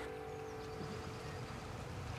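Water running steadily through a wooden log flume that carries pulpwood logs, a faint, even rush with a low rumble under it.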